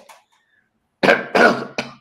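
A man coughing three times in quick succession, starting about a second in.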